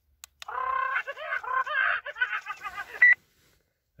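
Talking plush toy parrot chattering in a high-pitched, sped-up electronic voice for about two and a half seconds, ending with a short sharp squeak. A brief click comes just before it starts.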